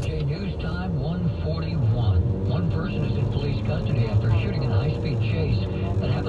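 A talk-radio voice playing over the car's speakers, with the steady rumble of road noise from the moving car beneath it.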